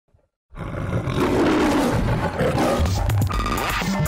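A tiger's roar sound effect starting about half a second in, followed by intro music with sweeping, gliding sounds and a low beat.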